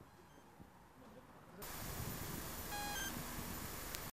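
Faint room tone, then from about a second and a half in a steady hum of outdoor street noise, with a short high electronic beep about three seconds in.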